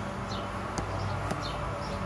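Steady low background hum with a few faint, short, high falling chirps and a couple of soft clicks.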